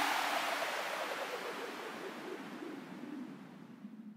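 The decaying tail of an electronic track's ending: a wash of noise with a faint low hum, fading steadily away to silence.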